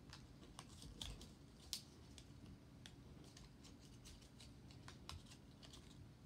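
Faint, irregular small clicks and light rustling of wired earphones' cable and their black cardboard packaging holder being handled and pulled apart, with one slightly sharper click a little under two seconds in.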